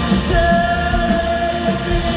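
Live rock band playing at full volume: a singer holds one long note, starting about a third of a second in, over a steady drum beat and sustained instruments.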